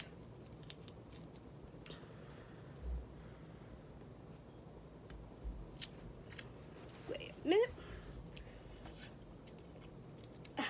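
Someone eating mango with a metal spoon: a few light spoon clicks and soft mouth noises, with a short rising vocal sound from the eater about three-quarters of the way through.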